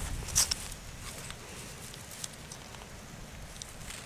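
Ferrocerium rod (fire steel) scraped with a striker to throw sparks onto dry grass tinder. There is one sharp, high scrape about half a second in, then a few fainter scrapes.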